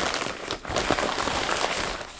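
White packaging wrapping crinkling and rustling as it is pulled open by hand.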